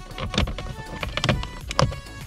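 Plastic instrument-cluster surround of an Opel Calibra/Vectra A being pulled free from one side, a run of creaks and clicks from its clips with the sharpest snap near the end.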